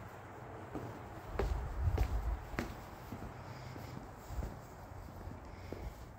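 Footsteps on a concrete patio: three steps about 0.6 s apart starting a little over a second in, then a couple more later. Low rumbling from the moving handheld camera or wind sits under them.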